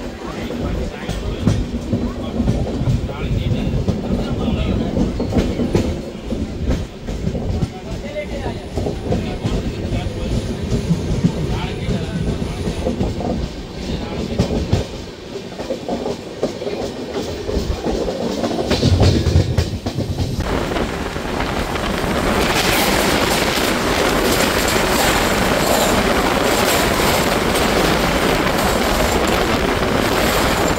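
A moving train's wheels clicking over rail joints over a steady rumble. About twenty seconds in, a much louder even rushing noise starts suddenly as another train passes close alongside on the adjacent track.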